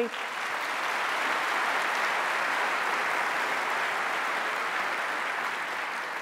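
Conference-hall audience applauding steadily, fading slightly near the end.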